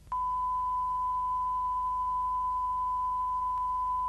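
A steady, unbroken electronic test tone, one pure high-pitched note held without change, starting just after a short silence, over a faint low hum.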